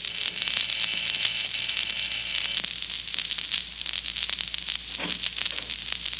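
Surface crackle and hiss of an old 1940 radio recording, with many small clicks throughout. The last faint notes of a music bridge fade out in the first second or two.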